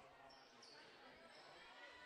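Near silence: faint gymnasium room tone, with a couple of brief, faint high squeaks in the first second.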